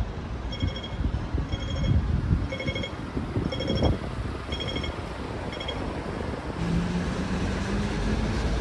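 City street traffic noise with a short electronic beep repeating about once a second for the first six seconds. A low steady hum comes in near the end.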